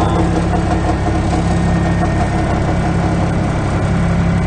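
John Deere F1145 front mower's Yanmar diesel engine running steadily at idle, heard from inside its cab, where it is a little loud.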